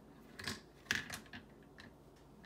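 Wooden spoon stirring melted butter and oil in a metal saucepan, knocking lightly against the pan in about five short clicks.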